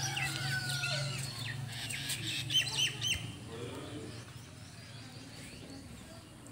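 Birds calling outdoors: scattered short chirps, with a quick run of several curved calls about two and a half seconds in, over a faint low hum that fades early on.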